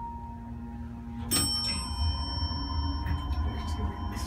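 Evans hydraulic elevator arriving at a floor. The steady hum of its pump cuts off about a second in with a click, and a chime rings on with several clear tones. A low rumble follows as the car doors slide open.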